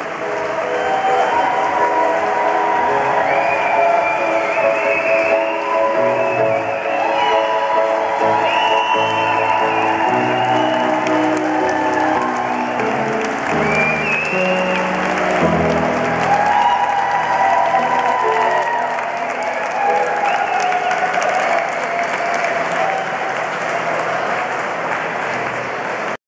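Grand piano playing held chords under sustained audience applause.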